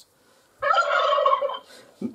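Doorbell chime set to a turkey gobble: one gobbling call beginning about half a second in and fading after about a second, announcing someone at the front door.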